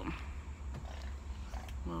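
Low, fluctuating rumble of wind buffeting the microphone outdoors, with a woman's voice starting near the end.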